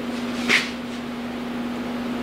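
Steady low hum of room tone, with one short click about half a second in.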